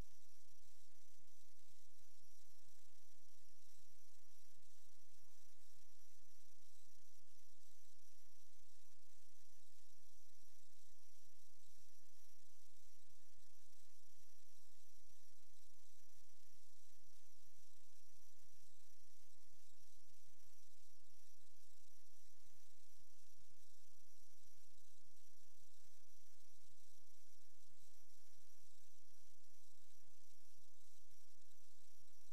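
Steady low electrical hum with a constant hiss, the background noise of a sewer inspection camera's recording unit, with no distinct events.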